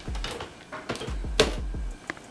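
Rumbling handling noise from a hand-held camera being carried, with a few light clicks and one sharp knock about one and a half seconds in.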